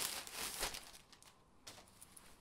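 Plastic packaging bag being opened and crinkled by hand, loudest in roughly the first half second, then thinning to a few faint rustles.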